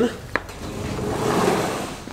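A single click, then a rustling, scraping noise that swells and fades over about a second and a half.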